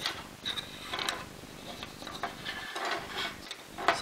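Carbon-fibre drone frame parts clicking and scraping against each other as a folding arm is handled and fitted, with several irregular sharp ticks.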